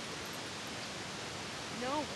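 A steady, even hiss of outdoor background noise with no distinct events; a voice breaks in at the very end.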